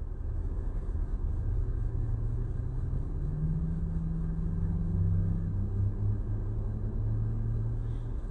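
Low, steady rumble of a vehicle engine heard inside a car cabin, with a slightly higher hum joining about three seconds in for a couple of seconds.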